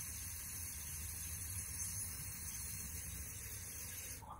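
Steady hiss over a low hum, with no distinct events.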